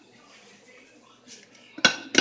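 Kitchenware clinking: a utensil knocking sharply against a mixing bowl twice near the end, after a quiet stretch.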